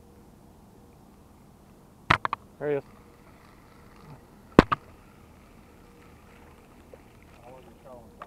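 A few sharp clicks about two seconds in, then one louder, sharper click or knock about four and a half seconds in, over quiet background.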